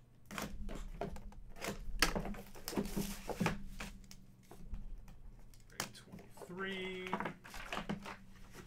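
Cellophane shrink-wrap crinkling and tearing as it is pulled off a trading-card box, then the cardboard box being handled and its lid lifted off: a run of crackles, scrapes and light taps.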